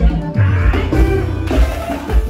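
Live piseiro (forró) band music played loud over a PA, an instrumental stretch with a heavy bass beat about twice a second.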